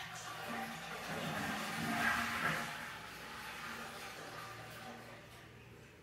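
A broad rushing noise that swells to a peak about two seconds in, then fades over the next few seconds.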